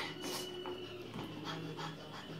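A child breathing quietly in soft, repeated breaths, with faint rustling of cloth being handled.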